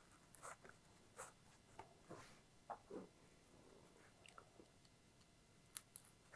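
Near silence with faint, scattered scratches and creaks of a cord being worked into a slot in a foam wing by hand and screwdriver, about one small sound a second.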